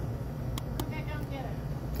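Shop background: a steady low rumble with faint voices, and a couple of light clicks about half a second in.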